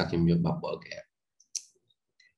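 A voice talking for the first second, then a single sharp computer mouse click about one and a half seconds in, with a couple of faint ticks around it.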